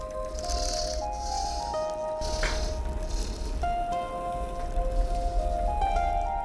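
Background music of slow, plucked string notes stepping up and down, with a few short rattling swishes in the first half.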